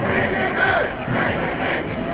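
Crowd of demonstrators shouting and chanting, many raised voices overlapping.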